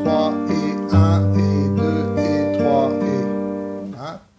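Acoustic guitar fingerpicked as a waltz-time arpeggio on an open E minor chord: the thumb plays the open low E string, then index, middle and ring fingers pick the higher strings, each note left to ring. The low bass note is struck again about a second in, and the notes fade near the end.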